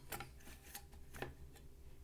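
Faint scattered clicks and light knocks from handling the transceiver's metal cabinet as it is turned around on the table, over a steady low hum.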